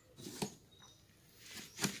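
Light handling noises: a sharp click a little under half a second in and another pair of clicks near the end, as hands move metal motorcycle engine parts inside a cardboard box.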